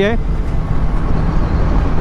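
Steady wind and road noise from a motorcycle moving at speed, rushing over the camera microphone, with the engine running underneath.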